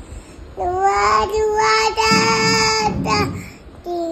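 A toddler singing one long held note. It starts about half a second in, holds a nearly steady pitch for about two and a half seconds, then breaks off.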